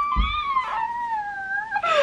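A woman's long, high-pitched squeal of delight, held and wavering slightly for nearly two seconds before it breaks off.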